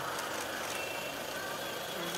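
Steady outdoor street background noise, with a faint thin high tone about halfway through.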